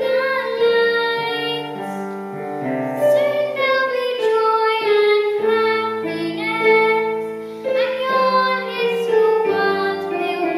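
A young girl singing a solo melody with piano accompaniment.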